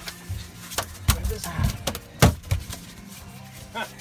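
A bonnethead shark thrashing on a fiberglass boat deck, its body slapping the deck in about half a dozen irregular thumps, the loudest a little past halfway.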